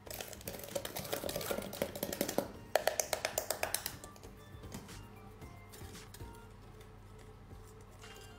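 A spoon stirring a thick mix of instant coffee, sugar and a little hot water in a tall plastic beaker, giving rapid clicking and scraping against the beaker walls, strongest about three seconds in and dying away after four seconds. Background music runs underneath.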